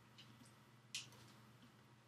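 Faint clicks from a camera being locked onto a tripod head's quick-release plate mount, with one sharper click about a second in.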